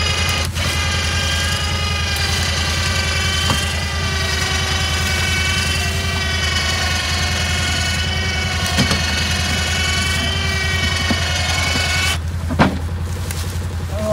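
Badlands 2500 electric winch running under load, hoisting a deer carcass: a steady motor whine from about half a second in that stops about two seconds before the end, over a steady low hum, with a short knock just after it stops.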